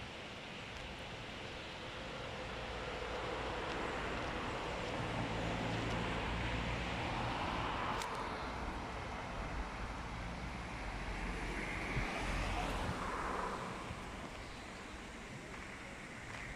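Distant engine noise swelling over several seconds and fading again, with a steady low hum at its height, over a wash of outdoor air noise; a single sharp click about halfway through.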